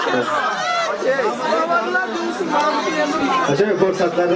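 Several men's voices chattering over one another, a lively mix of overlapping talk with no music.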